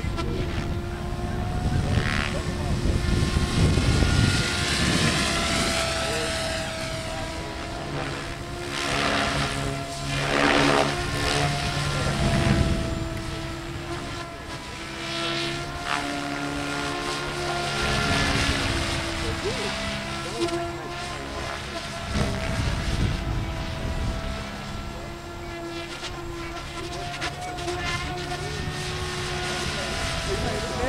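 SAB Goblin 700 electric radio-controlled helicopter in flight: a steady whine from its motor and rotor blades that rises and falls in pitch as it manoeuvres overhead. Low rumbles come and go near the start and again later on.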